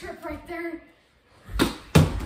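A short vocal sound, a brief pause, then two sharp thuds near the end, the second the loudest. They come from a mini-hockey shot and the goalie diving onto the carpet against the small net.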